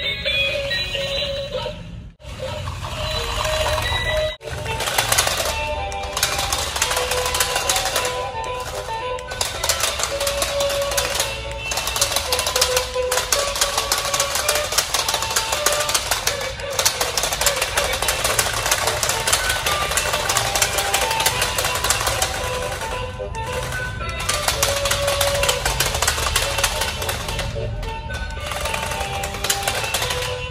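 Toy robot dogs driving on a hard tile floor: a rapid, continuous rattle from their plastic gear motors and wheels, with a simple electronic tune playing over it. The sound cuts out briefly about two and four seconds in.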